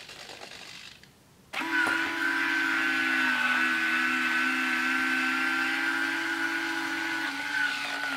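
Motor whine of the Avios MiG-17 model jet's retractable landing gear and sequencing gear doors lowering the gear. It starts suddenly about a second and a half in, holds steady with a brief dip partway, and drops in pitch as the gear locks down near the end.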